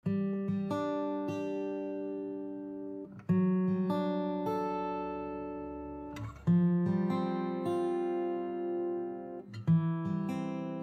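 Background music: an acoustic guitar playing slow chords, each one struck and left to ring and fade, with a new chord about every three seconds.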